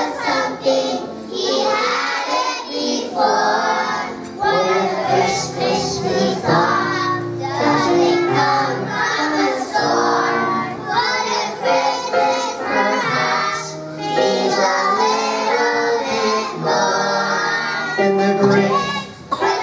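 A children's choir singing a song with music behind them.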